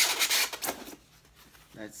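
A piece of grey polystyrene foam packaging being pulled free of the larger foam insert, foam rubbing and scraping against foam for about a second before it comes loose.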